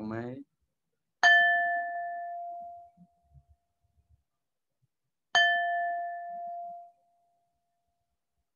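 A small struck metal chime rung twice, about four seconds apart. Each strike is a clear, bell-like tone that fades over about a second and a half, like a small gong.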